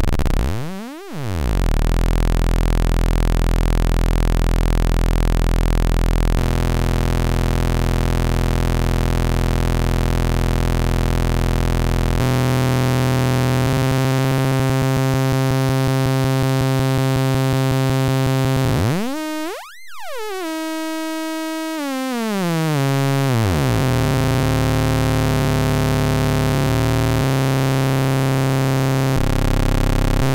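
Analog Eurorack VCO (kNoB Technology η Carinae) playing a buzzy sawtooth tone hard-synced to a second oscillator, its overtones shifting as the synced pitch is changed. About two-thirds of the way through the sound briefly drops out and the overtones glide down and settle again.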